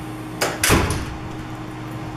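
A short sharp click, then a moment later a louder thump with a brief rustling tail, over a steady low hum.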